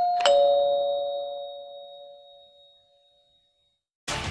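Two-note ding-dong chime sound effect, a higher note then a lower one, each ringing out and fading over about three seconds, marking the click on a subscribe notification bell.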